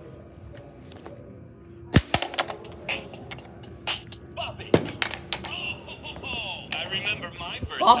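Sharp plastic knocks and clicks from a Bop It toy being handled. The loudest knock is about two seconds in and a few smaller ones follow, with more near the middle and end.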